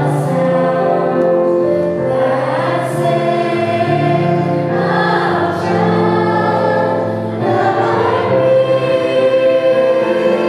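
Church choir of children and robed adults singing together, in slow held chords that change every second or two.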